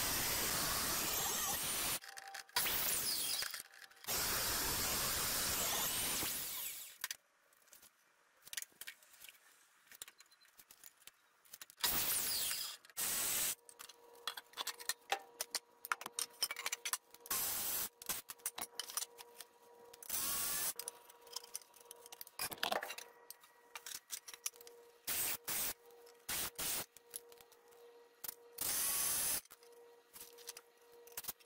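A portable table saw running and cutting two-by-six lumber through the first seven seconds or so, with a short break in between. After that, scattered knocks and scrapes of wooden boards being handled, broken by several short bursts, the last of them from a cordless drill driving screws near the end.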